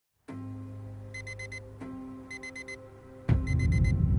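Digital alarm clock beeping in quick groups of four, the groups about a second apart, over a sustained music drone. About three seconds in, a loud deep boom and low rumble come in under the beeping.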